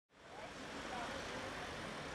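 Faint street ambience of passing car traffic with distant voices, fading in from silence at the start.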